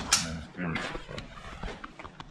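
Low talk with one sharp click right at the start, from an AR-15-style rifle being handled, and a few fainter clicks after it.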